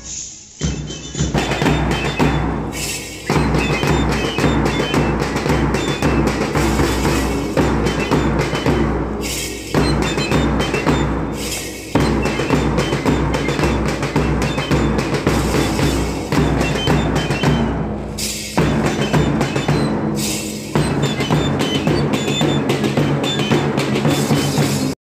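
School marching band playing: a pounding bass drum and snare drums under shrill recorders carrying a march tune. The playing is cut into short spliced takes, so the sound jumps abruptly several times.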